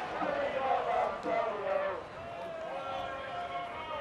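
Several distant voices calling and shouting over each other above a low crowd murmur, with no close commentary.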